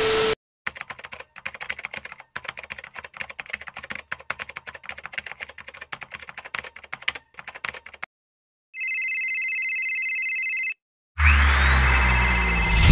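Keyboard-typing sound effect: a rapid run of small clicks for about seven seconds. It is followed by a steady electronic ringing tone for about two seconds, like a phone call coming in. Near the end a rising swoosh with a low rumble begins.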